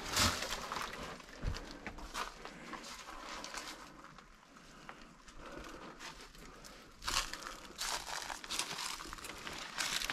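Footsteps crunching and crackling through dry leaf litter and twigs, in irregular steps. The steps are louder at the start, ease off in the middle, and pick up again about seven seconds in.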